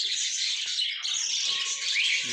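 A flock of budgerigars chattering and chirping continuously, many small high calls overlapping.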